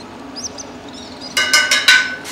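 A quick run of about five sharp metallic clinks with a ringing tone in the second half, after a couple of faint high chirps.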